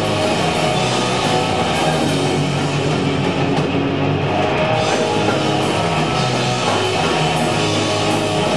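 A punk/hardcore rock band playing live, with loud electric guitar, bass and drum kit going steadily without a break.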